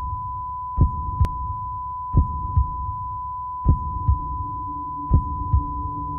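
Film sound design for the stunned moment after a bomb blast: one steady high ringing tone, like ringing ears, over a slow heartbeat of paired low thumps about every second and a half.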